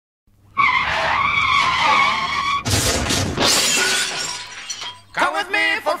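Car tyres screeching for about two seconds, then a crash with glass shattering and debris settling. Music with singing starts about a second before the end.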